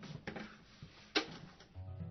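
An acoustic guitar begins near the end with a low note ringing on. Before it the room is quiet apart from a single sharp click about a second in.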